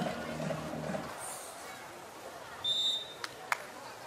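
A voice speaking briefly at the start, then a single short, high referee's whistle blast about three seconds in, signalling the serve, followed by two sharp clicks.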